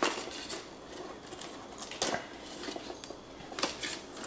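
Handling noise as a coiled charging cable is lifted out of a cardboard box tray: light rustling and a few sharp clicks and taps, the loudest about two seconds in.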